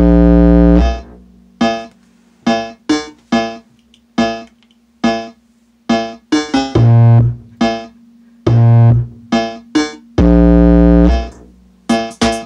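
Bass test music played loud through a Logitech Z906 subwoofer: a rhythm of short pitched notes broken by long, very deep bass notes near the start, twice in the middle and again near the end.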